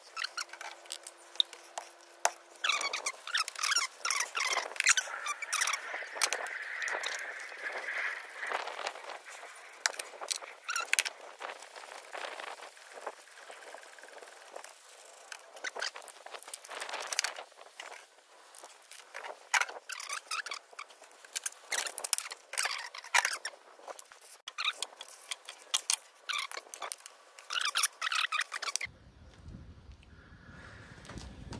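Hand tools and engine parts clicking, clinking and scraping as hands work among the spark plugs and plug leads of a 1966 Hillman Imp's engine, with a thin squeal for several seconds starting a few seconds in.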